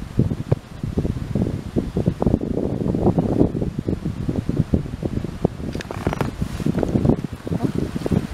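Wind buffeting the microphone: a loud, gusty low rumble that rises and falls irregularly.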